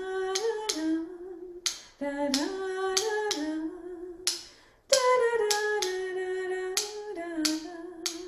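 A woman sings a short rhythm pattern on a few held notes three times over, with sharp clicks tapping out the beat alongside.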